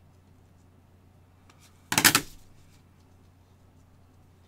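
A single brief, loud handling noise about two seconds in, lasting about half a second and trailing off quickly.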